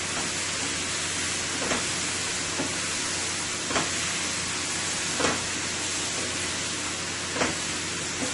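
Sliced bell peppers, carrots and onion sizzling steadily in a stainless steel skillet as they are stir-fried, with a few knocks of the spatula against the pan.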